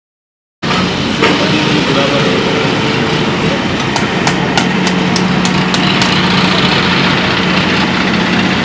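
Heavy-duty submersible slurry pump running: a loud, steady rushing noise with a low hum, starting abruptly just under a second in, with a few sharp clicks in the middle.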